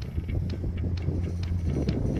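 Wind buffeting the microphone with a steady low rumble, over light, evenly spaced footsteps through wet grass, a few a second.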